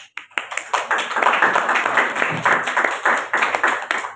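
A small group clapping: a round of applause that starts just after the opening and thins out to scattered single claps at the end.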